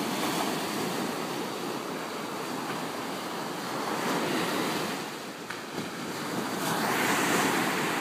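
Rough ocean surf at high tide, waves breaking and foam washing up onto the sand in a steady rush. It swells louder near the end as a wave comes in.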